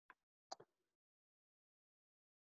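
Near silence, broken by three brief faint clicks in the first second, the second the loudest.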